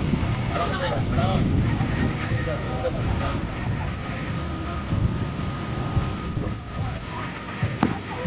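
Voices talking in the background, then near the end a single sharp crack of a metal bat hitting a tossed softball.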